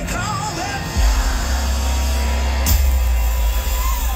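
Live concert music from a singer and band on an outdoor stage, heard from within the audience: loud and bass-heavy, with a sung melody over the band.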